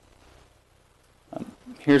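A pause in a man's talk over a meeting microphone: faint room tone, a brief noise about a second and a half in, then he starts speaking again near the end.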